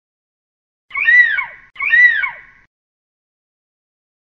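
A bird-of-prey scream, the stock eagle-cry sound effect, played twice in quick succession about a second in. Each call is loud and arches up before sliding down in pitch.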